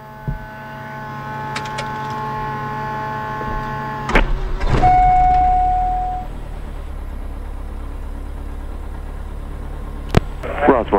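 Diamond DA40 Diamond Star's piston engine being started, heard from inside the cockpit. A steady hum runs for about four seconds, then a click and the engine catches: loudest for about two seconds, with a steady tone sounding, before it settles to an even idle.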